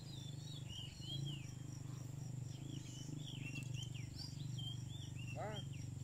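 Outdoor birds chirping over and over in short arched notes, over a faint steady high insect buzz and a steady low hum. A brief falling call comes about five and a half seconds in.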